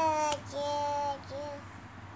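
A toddler girl singing a Krishna bhajan unaccompanied: a held note that breaks off just after the start, then two shorter notes, trailing off about three quarters of the way in.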